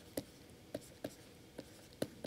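Faint clicks of a stylus writing on a tablet surface: about four light, separate taps over two seconds as letters are handwritten.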